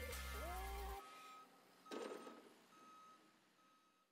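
Advertisement music cuts off about a second in. What follows is faint construction-site sound: a single-pitch backup alarm beeping at a steady pace, with a short dull swell of noise about two seconds in.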